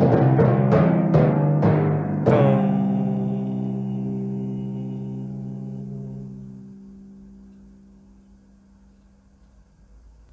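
Timpani played with a run of quick strokes, ending on one last strong stroke about two seconds in that is left to ring, the drums' pitched tone slowly dying away. The tone is more drum resonance than stick attack.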